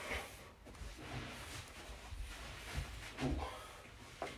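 Faint rustling and soft low bumps of a person shifting from sitting to kneeling on a carpeted floor.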